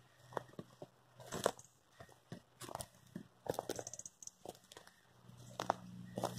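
Footsteps crunching on dry fallen leaves and twigs: a scatter of irregular, fairly faint crunches and crackles.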